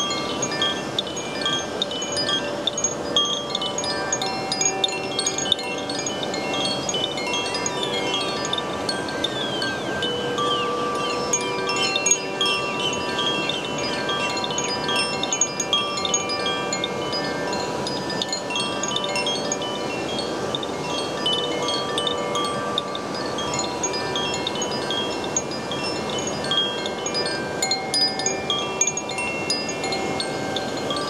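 Koshi chime, a bamboo tube with tuned metal rods inside, swayed by hand so the clapper keeps striking the rods: a constant stream of overlapping clear ringing tones.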